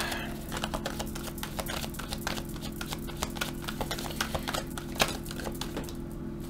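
Tarot cards being shuffled by hand: a steady run of quick, light clicks as the card edges flick past each other.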